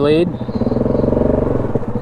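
Yamaha 700 ATV's single-cylinder four-stroke engine idling with a steady low throb, its revs rising briefly in the middle and settling again.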